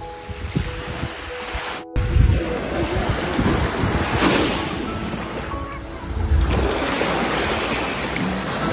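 Small sea waves washing onto the shore, starting about two seconds in and swelling and fading a few times, with wind rumbling on the microphone. Soft music plays underneath.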